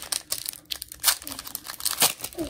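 Foil wrapper of a Pokémon trading-card booster pack being torn open by hand: a run of irregular crinkles and crackles, with the loudest rips about a second in and again near the end.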